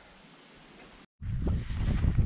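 Faint hiss, then after a cut about a second in, wind buffeting the microphone with a low rumble.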